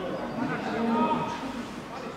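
Men's voices shouting across an outdoor football pitch, with one long drawn-out call in the middle.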